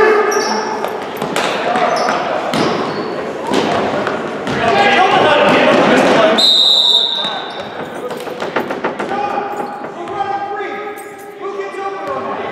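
Basketball game in a gym: the ball bouncing on a hardwood floor and sneakers squeaking, under spectators' shouting and cheering, loudest through the middle. A short referee's whistle blast sounds just past the middle.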